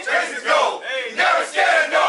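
A group of sailors shouting a motivational chant in unison, led by one caller, in short loud shouted phrases at about two a second.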